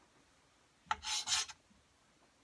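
A fingerboard ollie: a sharp click of the tail popping about a second in, then a brief rasp in two short strokes as the finger slides over the board's grip tape.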